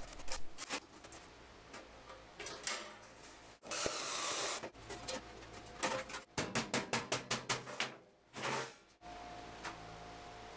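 Tin snips cutting holes in the thin sheet-steel outer shell of a rocket stove: scattered metallic clicks, then a quick run of snips, several a second, past the middle. A second-long rush of noise comes a few seconds in.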